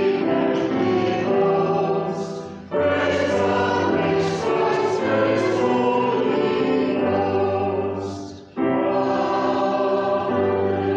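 A small church choir singing an anthem in sustained phrases, with two short breaths between phrases, about a quarter of the way in and near the end.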